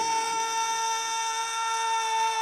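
A male singer belting one long, high note at full voice, held at a steady pitch, with no instruments heard behind it.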